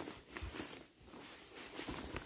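Faint rustling and a few soft, irregular footsteps through grass and brush.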